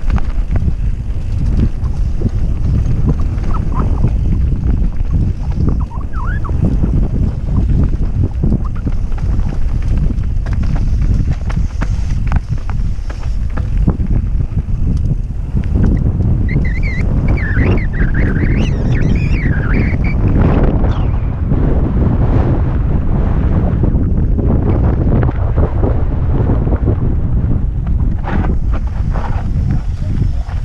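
Wind buffeting the microphone of a camera on a mountain bike descending a dirt trail, a loud, steady low rumble, with frequent small knocks and rattles from the bike over rough ground. A brief wavering high-pitched squeal comes in about halfway through.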